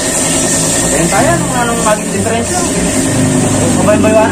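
A motorcycle engine idling with a low steady hum that grows firmer about halfway through, with voices talking over it.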